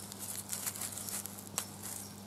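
Faint rustling and crackling of dry leaf litter and grass as a hand picks and handles a small mushroom, with a sharper click about one and a half seconds in, over a faint steady low hum.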